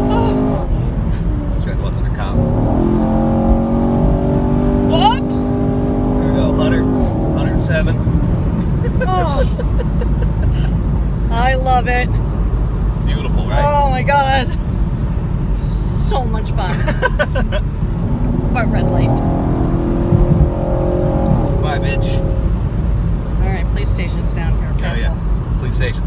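Chevrolet Camaro SS's 6.2-litre V8 pulling hard under acceleration, heard from inside the cabin over constant road rumble, in two pulls of a few seconds each, one a few seconds in and one near the end. Voices exclaim and laugh between the pulls.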